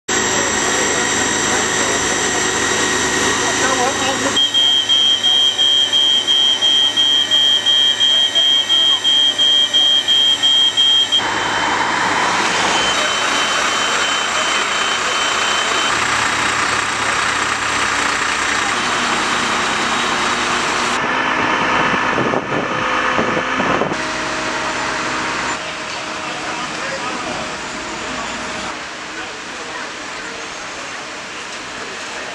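Fire scene sound dominated by the steady running of a fire engine's engine and pump, with indistinct voices. For several seconds early on, a high electronic beep repeats about twice a second.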